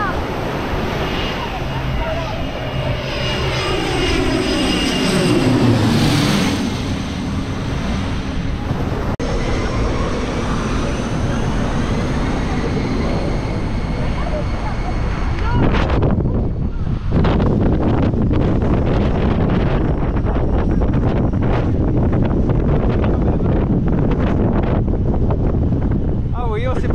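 A small aircraft flies low overhead on its landing approach, its engine note falling steadily in pitch as it passes. In the second half a loud, steady rush of noise with wind buffeting the microphone takes over.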